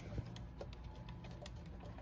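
A low steady hum with a few faint, small clicks of handling.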